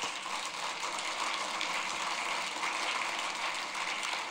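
Audience applauding, a steady spread of clapping that starts suddenly.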